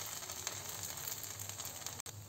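Eggplant slices in oil on a flat iron tawa sizzling, a faint steady hiss with the gas turned off.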